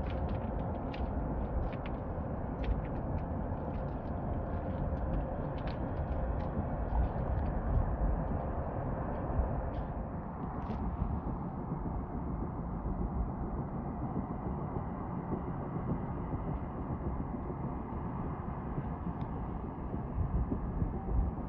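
Outdoor wind rumbling on the microphone, uneven in level. A faint steady hum and scattered light ticks sit over it in the first half and stop about halfway through.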